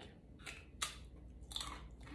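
A man biting and chewing a crisp beetroot chip: a few short, dry crunches, the loudest just before a second in.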